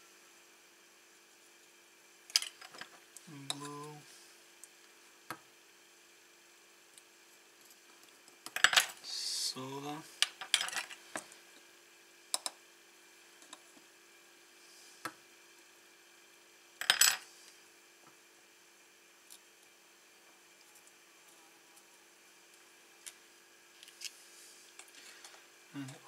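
Small metal tools clicking and clinking against a small metal tin and the bench at scattered intervals, a dozen or so light taps and scrapes during careful hand soldering work. A faint steady hum sits underneath.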